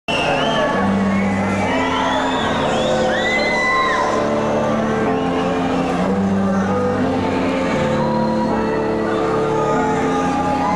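Concert crowd cheering, whooping and whistling over a slow run of held, droning low notes from the stage.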